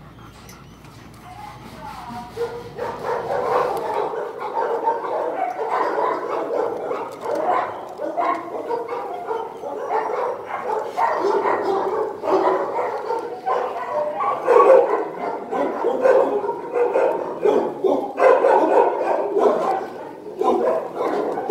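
Dogs barking, yipping and whining, starting about two seconds in and keeping on without a break.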